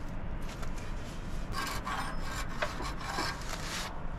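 Dry rustling and scraping of thin baked flatbread sheets handled on a round iron griddle: a run of short rubbing strokes, mostly in the second half.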